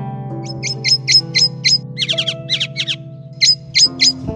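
A songbird chirping in quick, sharp, high chirps, a run of about six, then a short string of lower notes, then three more chirps near the end, over soft plucked-string instrumental music.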